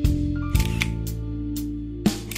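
Camera shutter clicks, a couple of sharp snaps near the start and about half a second in, over background music with long held notes.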